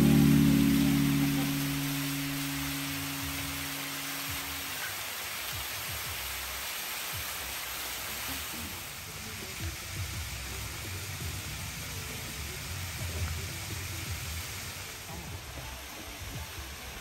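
A held final music chord fades out over the first few seconds, leaving the steady hiss of a thin waterfall falling and splashing down a rock face.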